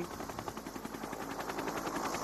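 Helicopter rotor making a fast, even chopping sound.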